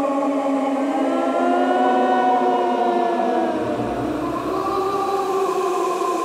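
Eerie ghostly wailing from Spirit Halloween ghost animatronics: several long, drawn-out voice-like notes slowly rising and falling together like a siren. A low rumble joins for about two seconds past the middle.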